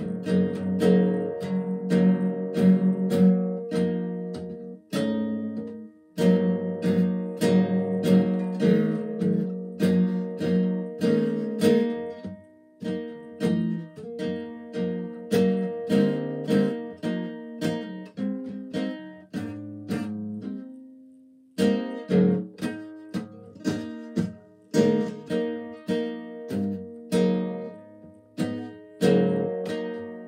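Classical acoustic guitar strummed in quick, steady chords, the chord changing every few seconds. About two-thirds through, the strumming stops for a moment while a single low note rings, then starts again.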